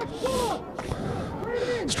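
Faint raised voices calling out across a football pitch, with two short bursts of hiss.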